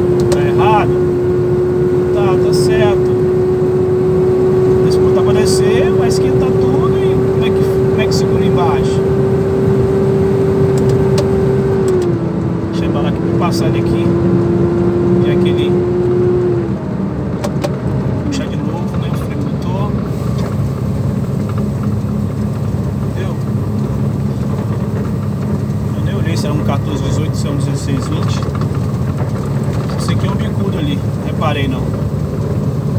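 Iveco truck's diesel engine running under engine braking on a long downhill grade, heard from inside the cab. A steady whine sits over the engine hum, drops slightly in pitch about twelve seconds in and stops about four seconds later, after which the engine is a little quieter.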